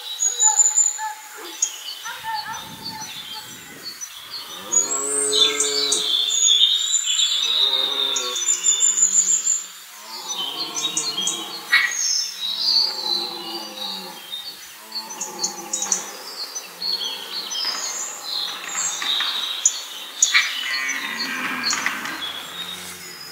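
Red deer stag roaring in the rut: a series of long, deep bellows beginning about five seconds in, with small birds chirping throughout.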